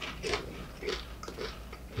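Tortilla chips crunching and crackling softly, about half a dozen light, irregular crunches as the chips are handled and scooped into salsa.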